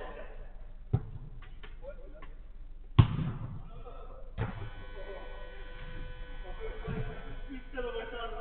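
Sharp thuds of a football on an indoor five-a-side pitch: one about a second in, the loudest at three seconds and another about four and a half seconds in. A player's long drawn-out shout follows, with other calls faint around it.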